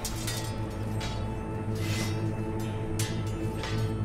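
Background film score: a held low drone with a noisy, swishing hit about once a second.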